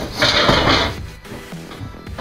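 A short scrape or rustle, about three-quarters of a second long, near the start, followed by faint music.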